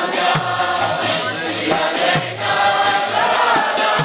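Devotional Hindi bhajan being sung to Gurudev, with accompaniment and a steady low drum beat about every three quarters of a second.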